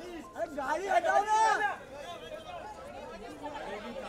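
Several people talking over each other, with one voice shouting loudly and high-pitched from about half a second in until nearly two seconds in.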